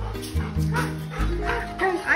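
Background music with steady low sustained notes. Over it a golden retriever gives short pitched calls that rise and fall, mostly in the second half.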